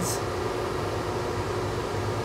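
Laminar flow hood's blower fan running steadily: a constant airy rushing noise with a low hum.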